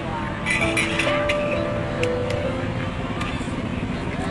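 Background music with long held notes over a noisy street-and-crowd bed, with a few faint clicks.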